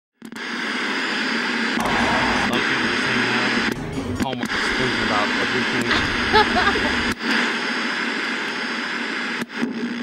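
Loud steady static hiss with a low hum and sharp crackling clicks, like a detuned radio or TV. It carries a faint voice briefly near the middle, and a heavier rumble underneath until about seven seconds in.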